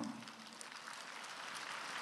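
Applause from a large seated audience, starting quietly and slowly swelling.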